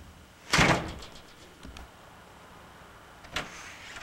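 A wooden front door: a loud bang with a brief rattle about half a second in, then a single sharp latch click near the end.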